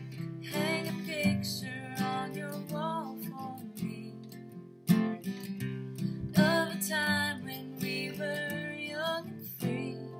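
Acoustic guitar being strummed, with a woman's voice singing a melody over it in two phrases.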